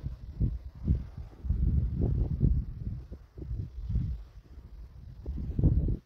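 Wind buffeting the phone's microphone outdoors: an uneven, gusting low rumble that swells and drops every second or so.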